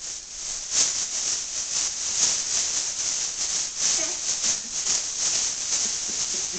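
Thin plastic bag crinkling and rustling steadily as it is waved about and grabbed at.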